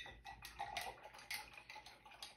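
Faint, irregular light ticks and taps of painting tools being handled: a paintbrush and a palette being moved and set down.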